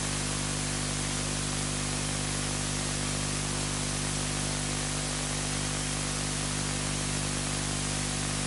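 Steady hiss of a recording's background noise, with a constant low hum beneath it; nothing changes.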